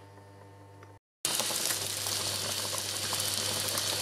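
About a second of faint room hum, then a cut to a steady crackling sizzle and bubbling from pans on an induction hob: sausage slices frying beside spaghetti boiling in oat milk.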